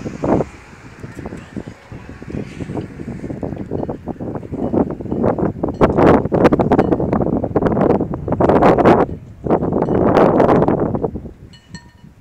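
Wind buffeting the microphone in loud, irregular gusts, strongest in the middle and easing off near the end.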